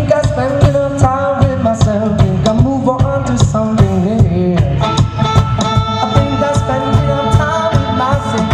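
Live band playing an upbeat song: drums keeping a steady beat under bass and electric guitar, with a saxophone carrying the melody.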